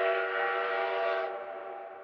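Train horn sound effect: a steady chord of several tones sounding together, held and then fading away over the second half.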